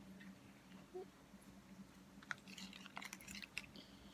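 Near silence with a faint steady hum, broken by a few soft clicks and rustles from a small foam squishy keychain and its chain being handled and squeezed.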